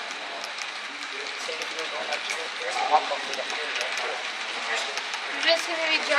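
HO-scale model train rolling along its track, heard as a steady rushing noise through a camera riding on it, with indistinct voices of people talking in the room.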